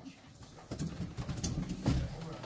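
Low, indistinct murmur of voices in a room, with a single sharp knock just before the end.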